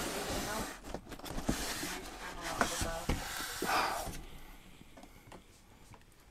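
Cardboard box scraping and rustling as it is slid off polystyrene packing, with a few knocks as loose packed items drop out onto the floor; the sound fades toward the end.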